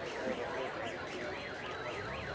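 An electronic warbling siren tone, its pitch sweeping rapidly up and down about five times a second without a break.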